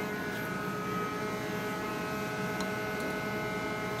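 Steady hum of a running machine, holding several fixed tones throughout, with a faint tick or two.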